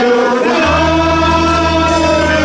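Live gospel worship music: singing over held keyboard chords, with a low bass note coming in under them just over half a second in.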